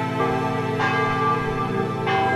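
Church bells ringing, a fresh stroke coming in under a second in and another right at the end, each leaving a long ringing tone over the ones before.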